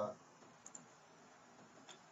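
Faint computer mouse clicks over quiet room tone: a quick pair about two-thirds of a second in, then a single click near the end.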